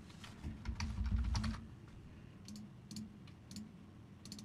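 Computer keyboard typing: a handful of scattered keystrokes, with a muffled low rumble about a second in.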